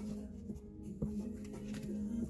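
Hands handling a stack of paper index cards, with soft sliding and a light tap about a second in. Soft background music with held notes plays underneath.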